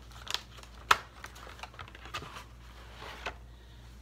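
Paperboard six-pack carton being opened at the top and an aluminium beer can pulled out: cardboard rustling and crinkling, with one sharp click about a second in.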